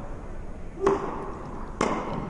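Two sharp tennis ball strikes on an indoor court. The louder one, about a second in, is the serve; the second, just under a second later, is the racket hitting the return.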